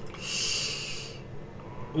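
A man drawing one audible breath in through his mouth, about a second long, in a pause between sentences.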